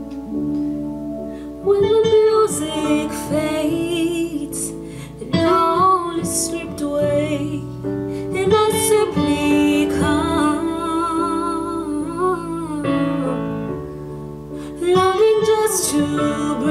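A woman singing a slow worship song in several phrases with long, wavering held notes, over a steady instrumental accompaniment of sustained chords.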